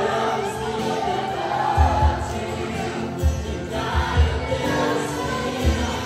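A live church worship band playing a praise song, with several voices singing together over the band and low kick-drum thumps.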